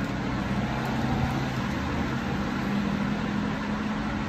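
Steady low background rumble with a faint hum, even throughout.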